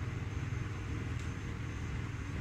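Steady low hum of room ventilation, with no distinct knocks or clatter.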